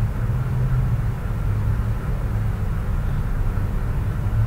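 Steady low rumble of background noise, unchanging throughout.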